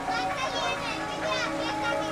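Several children's voices chattering and calling out at once, high-pitched and overlapping, with no clear words.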